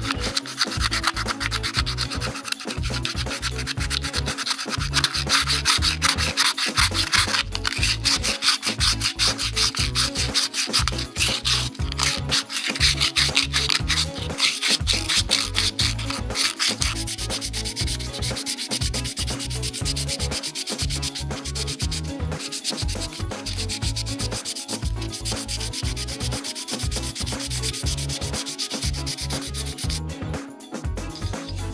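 Sandpaper rubbed in quick back-and-forth strokes against the inside of a hand-carved cherry-wood kuksa, a dense scratchy rubbing that turns lighter about halfway through.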